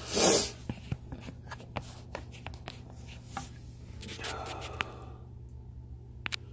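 Handling noise: a short rustle as the phone is moved at the start, then scattered light clicks and rubbing from hands working among the wiring, over a steady low hum.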